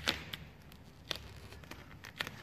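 A few light, sharp clicks and ticks as a plastic tuck tool and fingertips work vinyl wrap film against a car's window trim and rubber seal.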